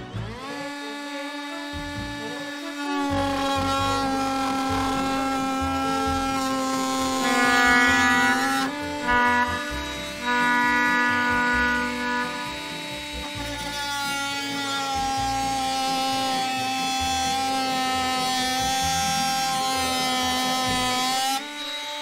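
Bauer 20V brushless oscillating multi-tool running at its highest speed, cutting into wood: a steady high buzz that spins up at the start, eases off for a moment about nine seconds in, then picks up again and stops shortly before the end. At top speed it cuts the way it should.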